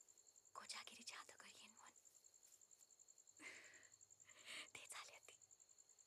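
Faint breathy whispering in three short bursts over a steady, pulsing high-pitched chirping of crickets.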